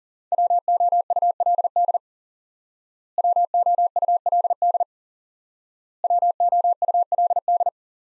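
Morse code sent as a steady pure tone of about 700 Hz at 40 words per minute, spelling the word "WOULD" three times over, in three quick bursts of dots and dashes with short pauses between them.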